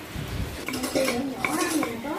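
Kitchen knife chopping lettuce on a thick round wooden chopping board: several sharp knocks of the blade hitting the wood.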